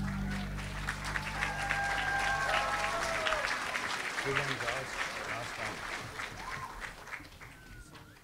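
Audience applauding and cheering as the music cuts off. The clapping gradually dies away toward the end.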